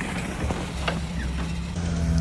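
Off-road vehicle engine idling steadily, with a few faint clicks.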